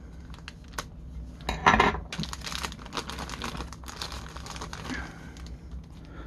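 Thin clear plastic bag crinkling and rustling as it is slit with a knife and torn open, a quick run of small crackles with a louder rustle just under two seconds in.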